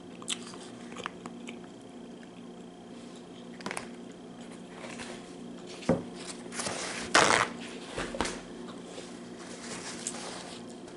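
Clear plastic salami wrapper crinkling and ticking under fingernails. Then a paper towel roll is handled: a sharp knock just before six seconds in, and a short, loud tearing rip a little after seven seconds as a sheet comes off the roll.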